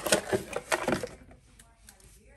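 Handling noise of a cardboard box and objects on a countertop: a quick run of sharp clicks and knocks in the first second, then much quieter.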